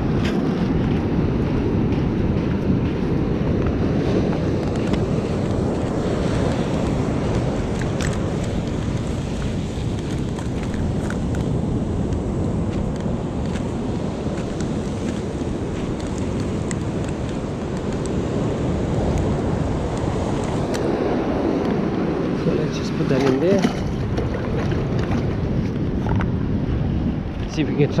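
Steady wash of ocean surf with wind buffeting the microphone.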